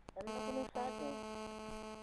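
Steady electrical hum on an open telephone line, with a faint muffled voice wavering through it in the first second.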